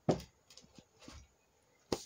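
Handling noise from a handheld camera being swung across a workbench: a soft thump at the start, then a few faint knocks and rustles, and near silence for the second half.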